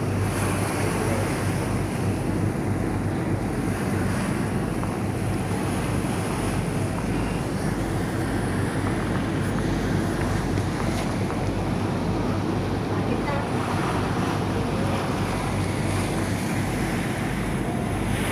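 Wind on the microphone and water rushing past the hull of a harbour ferry under way, over a steady low drone from the boat.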